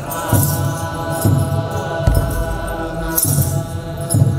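Eritrean Orthodox liturgical chant: a group of clergy singing held notes in unison, with a kebero drum struck about once a second and the jingle of shaken sistra on some of the beats.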